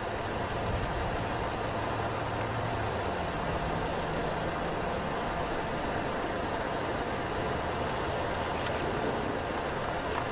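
Steady outdoor background noise: an even hiss with a faint low hum, unchanging throughout, with no distinct club strike standing out.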